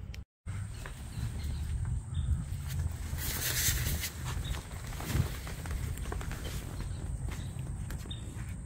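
Footsteps on grass with handheld phone handling noise as someone walks outdoors. A brief rustling hiss comes about three seconds in.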